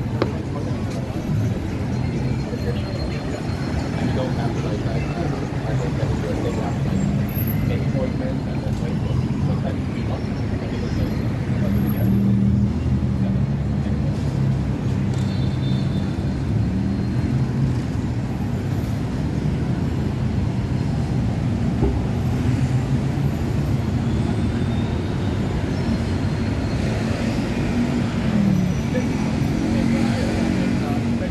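City street ambience: road traffic running alongside, with the untranscribed chatter of passers-by, at a fairly even level throughout.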